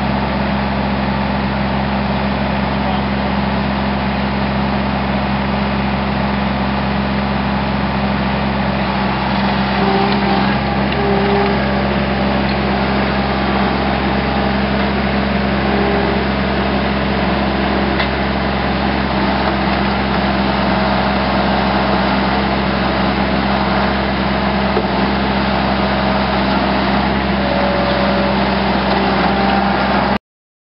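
Bobcat skid-steer loader's engine running at a steady speed, loud and unbroken throughout.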